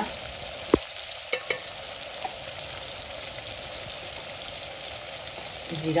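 Onion-tomato masala sizzling steadily in hot oil in an aluminium pot. Three sharp clicks in the first second and a half are a metal spoon knocking against the pot.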